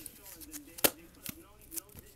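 Hard plastic trading-card holders being handled and set down: a few light taps and one sharp click a little before the middle.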